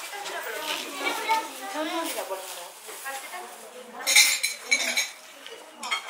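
Background chatter of several people at a shared floor meal, with plates and cutlery clinking and a brief louder clatter about four seconds in.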